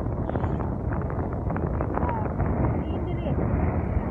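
Wind buffeting a phone's microphone in a steady low rumble, with people's voices faintly mixed in.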